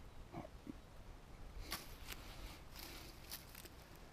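Faint rustling of dry grass and a few light clicks as a shed red deer antler is laid down on the ground beside its pair.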